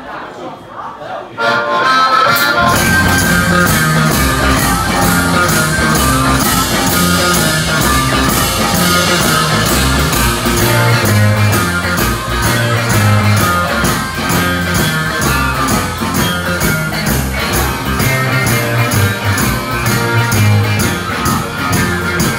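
Live blues band starting a song: a few quiet taps from drumsticks, then about two seconds in the full band comes in on drums, electric guitars and bass and plays on with a steady beat.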